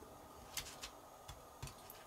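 A few faint, sharp clicks of white-metal model tank track links clinking as they are handled on a paper towel.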